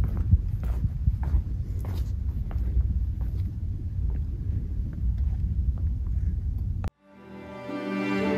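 Footsteps and handling noise of a handheld camera being walked through a large room: a low rumble with soft, irregular clicks. It cuts off abruptly about seven seconds in, and slow background music with sustained notes fades in.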